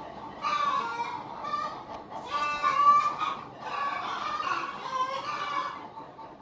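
Chickens clucking and squawking in a run of loud, repeated calls.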